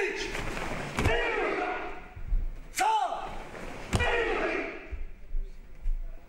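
A group of karateka performing techniques in unison: three sharp cracks of gi cloth snapping, a second or two apart, each marked by a short shout, echoing in a large hall.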